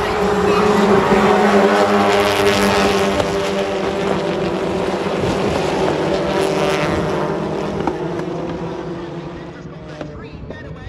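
A pack of circuit race cars going past at racing speed, several engines at high revs layered together, loudest in the first few seconds and slowly fading toward the end.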